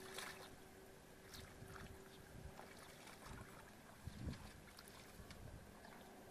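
Near silence, with faint water sloshing from feet wading through shallow muddy water and a few soft low thuds, the clearest a little after four seconds.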